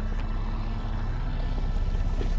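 Motorboat engine running steadily, a low rumble with a fast pulse.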